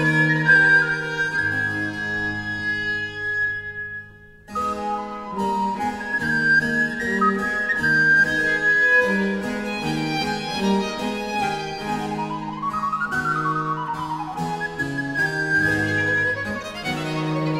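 Early Baroque chamber ensemble of recorder, violin, viola da gamba and harpsichord playing a canzona, a high recorder-like line over strings and harpsichord. The music almost stops for a moment about four seconds in, then picks up again.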